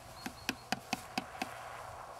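A rapid series of sharp clicks, about four a second, that stops about one and a half seconds in, with a faint buzz behind it.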